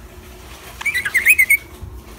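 Budgerigar chattering in a quick burst of high, wavering notes lasting under a second, about a second in.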